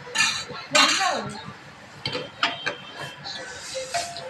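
Steel ladle and stainless-steel cooking pots clattering and clinking against each other on a gas stove. The loudest clatter comes about a second in, with a few lighter clinks around two seconds in.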